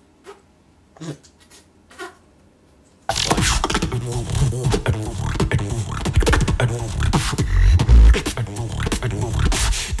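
A beatbox battle routine. A few faint short sounds come first, then about three seconds in the beatboxing cuts in suddenly and loud, with deep bass hits and rapid percussive sounds.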